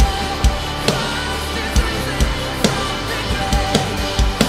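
Acoustic drum kit (Sonor drums, Meinl cymbals) played in time with an instrumental backing track of sustained keys and guitar, with sharp drum and cymbal hits roughly every half second and no singing.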